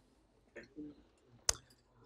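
A single sharp click about a second and a half in, over faint murmured voices.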